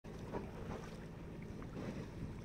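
Faint spray of a garden hose playing water over a sailboat's canvas cover, under a low, steady rumble of wind.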